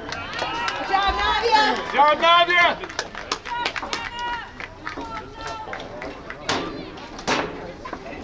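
Several voices shouting and calling during a girls' soccer game, loudest about one to three seconds in, with a couple of sharp knocks near the end.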